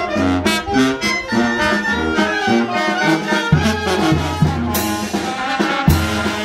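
A Mexican street brass band playing while walking in procession: trombones, trumpets and saxophones carry the tune. A bass drum with a cymbal on top joins about halfway through, with a cymbal crash near the end.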